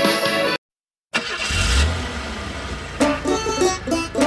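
Background music cuts off, and after a brief gap a car engine sound effect starts with a low rumble and settles into a steady idle. Upbeat plucked-string music comes in about three seconds in.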